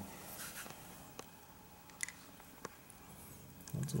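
Faint handling noises with a few light clicks, about one, two and two and a half seconds in, as the float bowl of a carburetor is taken off on a workbench.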